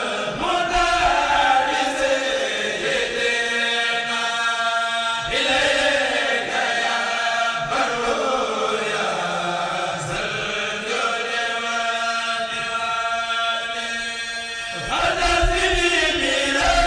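A kourel, a choir of Mouride khassida chanters, chanting together in long held notes, the phrase changing every few seconds.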